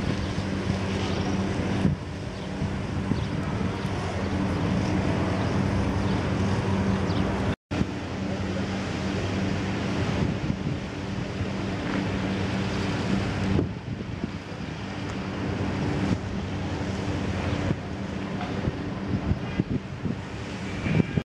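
A vehicle engine running with a steady low hum under rushing wind noise on the microphone; the sound cuts out completely for an instant about a third of the way through.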